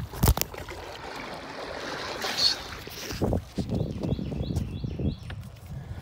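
Water lapping and trickling against a canoe's hull, with a sharp knock just after the start and a few dull thumps a little past the middle.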